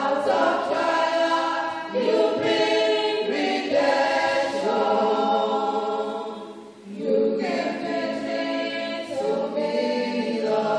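Church choir singing unaccompanied into microphones, several voices together. The singing starts at the very beginning and breaks briefly about seven seconds in.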